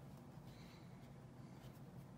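Near silence: a steady low hum with faint, scratchy rustling of fabric and thread as small plush pieces are hand-stitched.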